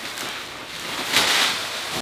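Plastic packaging wrap rustling as it is handled and pulled, growing louder a little past halfway through.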